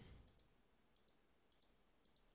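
Near silence with a few faint computer mouse clicks, spaced irregularly through the pause.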